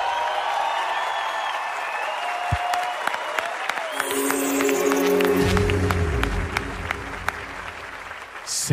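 Audience applause with scattered claps, mixed with music that settles on steady held notes about halfway through.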